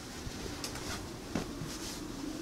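Cotton fabric rustling faintly as it is lifted and spread out on a table, with a few light taps.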